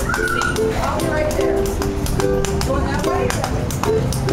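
A ukulele strummed in changing chords with a washboard tapped in a steady rhythm alongside it, making a small acoustic duo of plucked strings and sharp clicks.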